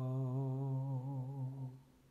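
A single low voice holding one sung note with a steady wavering vibrato, which dies away shortly before the end.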